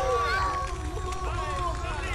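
A crowd of voices cheering and shouting at once, many voices overlapping.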